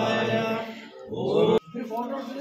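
A man's voice chanting Vedic mantras in a long, drawn-out phrase. After a short pause about a second in, a second rising phrase breaks off suddenly near the end.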